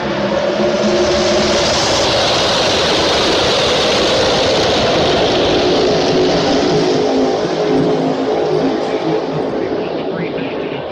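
A pack of NASCAR Cup Series stock cars' V8 engines running past together: a loud, steady sound with several engine notes held level and a rushing noise that swells over the first few seconds and then eases.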